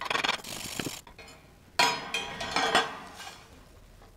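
Steel chipping hammer raking thin slag off a fresh E6010 stick-weld bead on steel plate: about a second of rapid metal-on-metal scraping, then a sharper, louder scrape near the middle that fades out.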